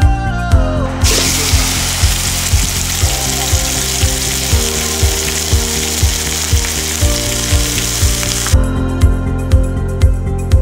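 Pork mince sizzling in hot oil in a carbon steel wok. The sizzle starts about a second in and cuts off abruptly near the end. Background music with a steady beat plays throughout.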